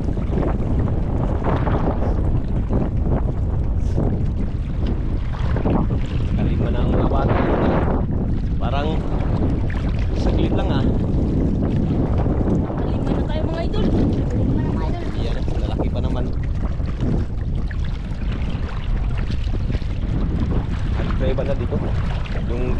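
Wind buffeting the camera microphone as a steady low noise, over water sloshing and splashing around legs wading through shallow sea water.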